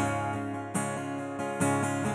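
Acoustic guitar strumming chords in a live country song, about three strums in an instrumental gap between sung lines.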